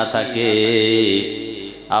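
A man preaching in a chanted, sing-song delivery, holding one long steady note for about a second before it trails off.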